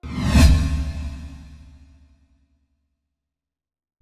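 Whoosh transition sound effect that starts suddenly with a deep low end, peaks within half a second and fades out over about two seconds.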